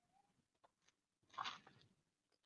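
Mostly near silence, with one brief crinkle about one and a half seconds in from the loose plastic shrink-wrap and the box being handled, plus a few faint ticks.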